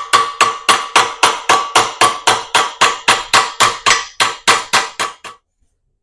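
Hammer blows forming a small copper strip wedged in a steel bench vise, about three even strikes a second with a metallic ring. The blows stop about five seconds in.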